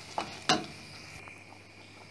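A wooden spoon knocks twice against a stainless steel pot while stirring a thick tomato-chili sambal, the second knock louder, followed by the faint steady sizzle of the sauce cooking.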